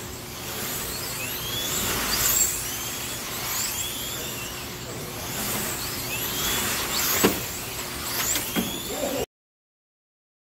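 Slot cars racing: their small electric motors whine in many overlapping rising and falling sweeps as the cars speed up and slow down around the track, with a sharp click about seven seconds in. The sound cuts off near the end.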